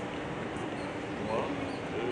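Outdoor background noise with faint distant voices, and one short high cry, like a small animal or a person, about two-thirds of the way through.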